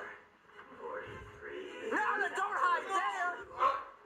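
A film's soundtrack playing through a laptop speaker: a quiet start, then a voice over music from about two seconds in.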